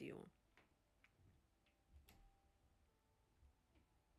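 Near silence with a few faint, short clicks spread through it, the clearest about two seconds in.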